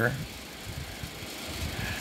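Steady low background noise with no distinct event: room tone, an even hiss with some low rumble.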